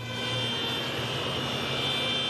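Steady drone of tractor and car engines with tyre and road noise from a convoy of tractors moving along a motorway with traffic.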